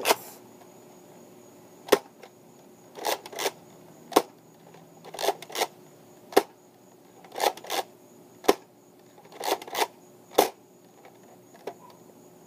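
Nerf Fortnite BASR-L bolt-action blaster being fired five times, each shot a sharp snap about two seconds apart. Between shots the plastic bolt is pulled back and pushed forward to prime it, two quick clicks.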